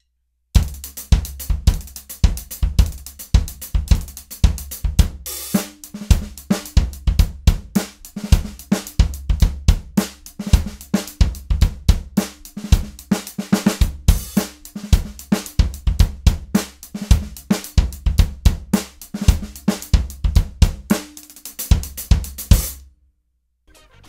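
A drum-kit groove on a floor tom converted into a small 18-inch bass drum, kicked with a pedal and beater, along with snare, hi-hat and cymbal. It starts about half a second in and stops about a second before the end.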